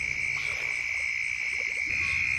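A steady, high-pitched night chorus of calling frogs and insects, one unbroken pitch held throughout.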